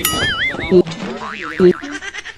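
Cartoon boing sound effect: a springy tone that wobbles up and down in pitch, heard twice. Short low blips come near the middle and near the end.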